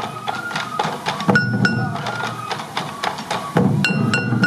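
Sansa odori festival music: hand-held taiko drums beaten by the dancers, the strikes sharp and uneven, under a high bamboo flute (fue) melody of held notes. It gets louder about three and a half seconds in.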